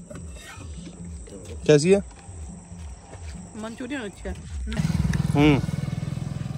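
Short bits of voice over a faint low pulsing sound. About five seconds in, a louder low rumble with a fast, even throb, like an engine running, starts suddenly, with a man's voice over it.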